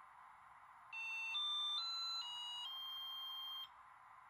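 SkyRC iMAX B6 mini balance charger playing its end-of-program beep tune: five beep notes of changing pitch starting about a second in, the last held for about a second. It signals that storage charging of a 3S LiPo pack has finished, at 11.47 V.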